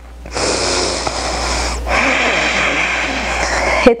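A woman's deep breath close to the microphone, taken to recover her breath: a long inhale, a brief break just under two seconds in, then a long exhale.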